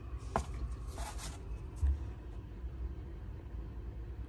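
Light handling sounds as a paper-wrapped roll of quarters is lifted out of a cardboard box: a sharp click, a light rustle and a soft thump, over a low steady background hum.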